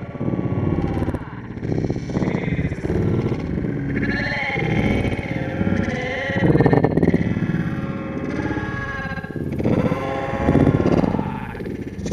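Background music with a melodic line running throughout.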